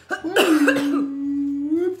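A person coughing and then holding a long vocal sound at one steady pitch, a reaction to the burn of a cinnamon-whisky shot laced with Tabasco.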